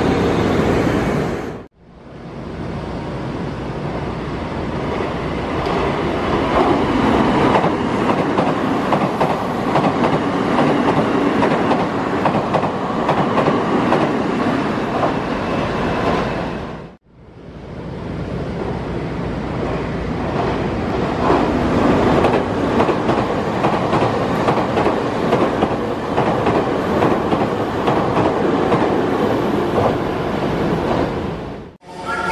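Nankai electric commuter trains running along the platform: a steady loud rumble of wheels on rails with clatter over the rail joints. The sound cuts out suddenly twice, about two seconds in and again about seventeen seconds in, and builds back up each time.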